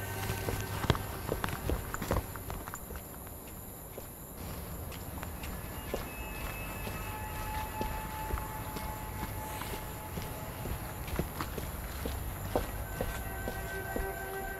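Footsteps on a paved sidewalk, irregular and fairly faint, over a steady low hum.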